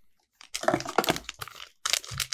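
Packaging of Disney mystery pins crinkling and crackling as it is handled and opened, after a brief near-silent moment at the start.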